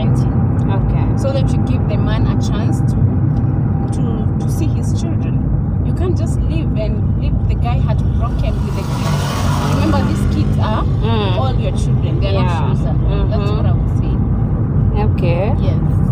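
Steady low rumble of a car driving, heard from inside the cabin, under people talking, with a brief rush of noise about nine seconds in.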